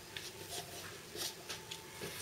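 Faint, soft ticks and light taps from a bowl being handled while the last of a runny batter is poured into a silicone cake mould, over quiet room tone.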